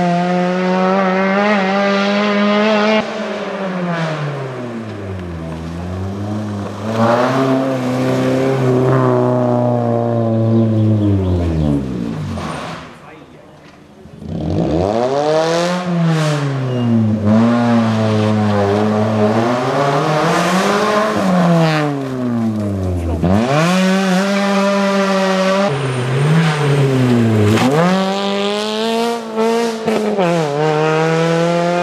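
Suzuki Swift rally car's engine driven hard on a gravel stage, its pitch climbing through each gear and dropping on upshifts and when lifting and braking for corners. A few seconds near the middle are much quieter.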